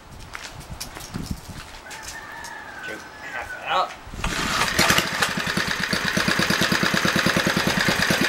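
A 1976 Briggs & Stratton 60102 two-horsepower single-cylinder air-cooled engine is pull-started. It catches about four seconds in and settles into a steady, rapid, even beat at low idle.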